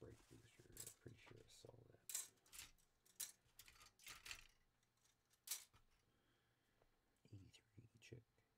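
Faint handling sounds from assembling a plastic model kit at a hobby bench: a series of about seven short, sharp clicks and snips as parts are cut and handled, with a little low mumbling.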